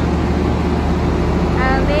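Steady low hum of a stationary Tri-Rail double-deck diesel commuter train idling beside the platform. A voice starts near the end.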